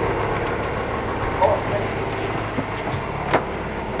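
Steady low hum of a sailboat's engine running, heard from inside the cabin, with a sharp click a little after three seconds in.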